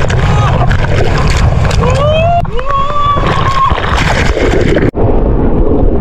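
Breaking surf and churning water washing over a camera held in the waves, buffeting the microphone with loud rough noise. The sound cuts out for an instant near the end.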